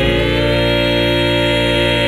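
Gospel song ending: a vocal quartet in close harmony holding one long chord over a steady bass, a gentle vibrato coming into the voices about halfway through.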